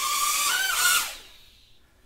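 Small hand-controlled UFO toy drone's motors and propellers whirring, with a whine whose pitch wavers as it hovers. The sound dies away about a second in.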